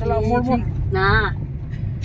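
A steady low rumble from a car driving, heard inside the cabin, under high-pitched voices, with a short wavering vocal sound about a second in.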